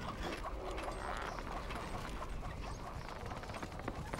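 A dense, irregular clatter of small knocks and clicks.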